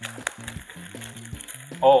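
Black plastic trash-bag wrapping rustling and crinkling as it is pulled open by hand, over background music with a low, steady rhythmic bass line. A voice says "oh" near the end.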